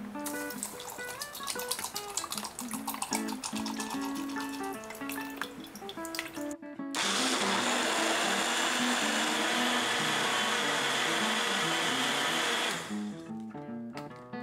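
Countertop blender starting abruptly and running steadily for about six seconds, then winding down, blending tofu and milk into a soy broth, over background guitar music.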